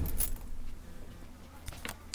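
A few light clicks and rustles, near the start and again near the end, over a faint steady low hum.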